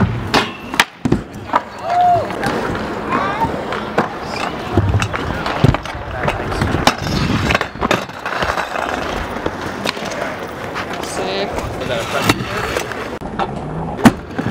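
Trick scooter and skateboard wheels rolling over asphalt and ramps, broken by repeated sharp clacks and knocks of landings and deck impacts.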